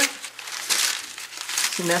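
Paper crinkling and rustling in irregular bursts as it is crumpled and stuffed in between stacked split firewood logs.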